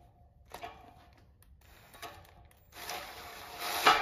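A 1/2-inch NPT tap cutting thread in a stainless steel flange, turned by a cordless drill through a gear-reduction tapping arm. Soft, scattered scraping and creaking give way near the end to a louder, steady run lasting about a second.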